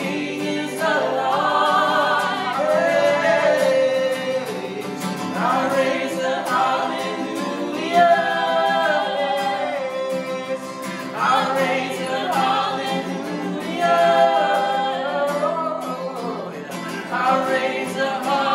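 A woman's and a man's voices singing a worship song in three-part harmony, accompanied by a strummed acoustic guitar, with the phrases ringing in the reverberant church lobby.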